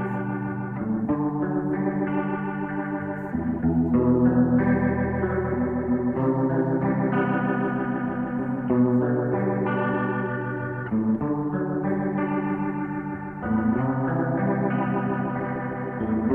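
Organ playing sustained chords in a rock song's instrumental opening, without vocals. The chord changes about every two and a half seconds.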